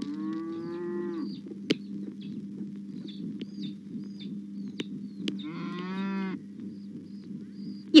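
A bullock lowing twice, each call lasting about a second, the first near the start and the second about five seconds later, over a steady low hum with a few sharp clicks.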